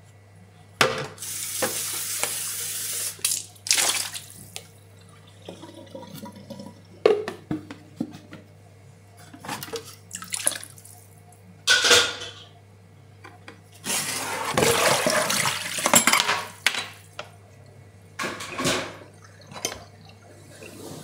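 Water running in bursts, once for about two seconds early and again for about two and a half seconds later, with short splashes and dishes clinking in between.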